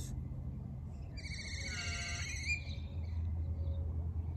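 A single high, buzzy bird call starting about a second in and lasting about a second and a half, over a steady low hum.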